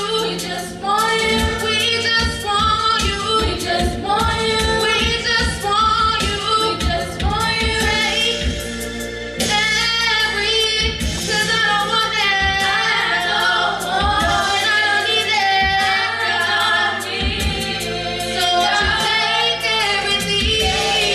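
Female vocal group singing a gospel song in harmony through handheld microphones, with sustained, bending sung notes throughout.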